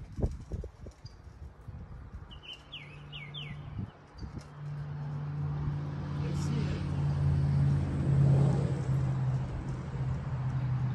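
A low, steady motor hum comes in and swells from about halfway, loudest near the end. A couple of low knocks sound at the very start, and a bird gives a quick run of four falling chirps about three seconds in.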